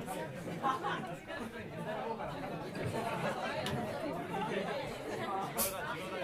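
Low, overlapping chatter of many voices from a standing audience in a club, with no music playing. Two faint short clicks come through late in the chatter.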